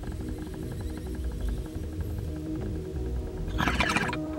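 Water bong bubbling as smoke is drawn through it: a rapid, even gurgle over a low hum, growing louder and breathier near the end.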